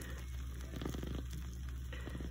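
Meat and tomato sauce bubbling and crackling faintly at the edges of a glass baking dish of casserole just out of a hot oven, over a steady low hum.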